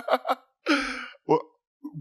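A man's sharp breath in, like a gasp, about two-thirds of a second in, followed by a short spoken "well".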